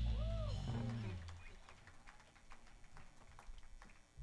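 A small band's final chord ringing out and fading over about the first second, then sparse, scattered hand claps from a small audience.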